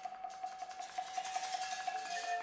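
Marimba played by several percussionists: one high note held as a steady pulsing roll, about five strokes a second, over a spatter of light mallet clicks.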